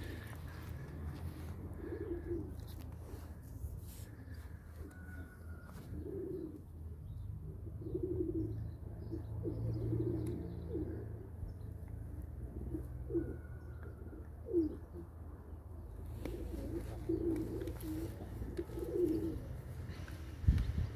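A flock of domestic pigeons cooing, short low coos following one another every second or two, with a few faint higher chirps, over a steady low background rumble.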